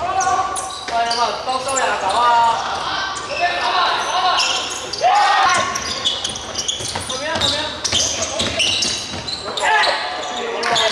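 Live basketball play on a hardwood court: the ball bouncing, sneakers squeaking in short sharp squeals, and players calling out, all echoing in a large sports hall.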